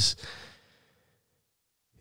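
A man's short, breathy exhale trailing off the end of a spoken word in the first half second, then dead silence.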